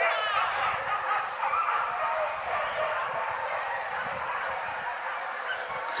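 Hunting dogs barking and yelping at a distance during a wild-boar chase, with the tail of a loud drawn-out call at the very start.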